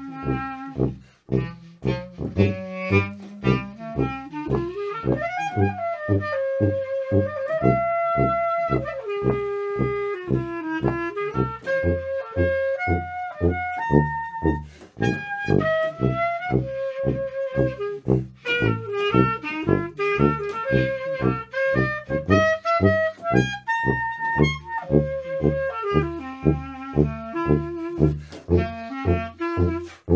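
Instrumental jazz from a small band: a wind instrument plays the melody, sliding up and down between notes, over a steady bass line of short low notes, about two a second.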